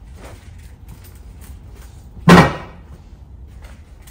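A single loud thump about two seconds in, dying away within half a second, against faint handling noise.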